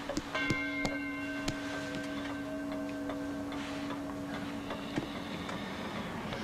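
Pendulum wall clock striking: a single gong stroke just after the start rings on with several overtones and fades away over about four seconds, with a few light clicks.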